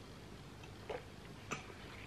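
Two short, quiet clicks about half a second apart as a mug is handled and set down after a sip, over a faint steady room hum.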